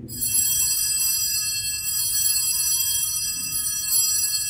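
Altar bells ringing at the elevation of the consecrated host, a cluster of bright high-pitched tones that starts right after the consecration words and rings on steadily.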